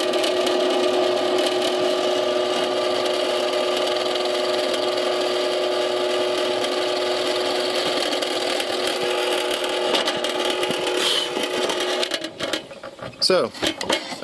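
Drill press motor running steadily with a hum while its bit bores a half-inch hole through three-quarter-inch plywood. The motor is switched off about twelve seconds in.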